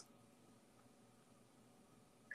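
Near silence: a pause in the video-call audio.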